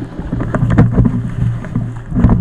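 Gloved hands rubbing and knocking on a ski helmet and goggles close to the camera, making repeated sharp crackles over a steady low hum.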